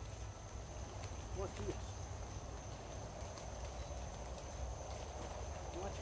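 Quiet outdoor background: a low, fluctuating rumble and a thin, steady high-pitched tone, with a short spoken phrase about a second in.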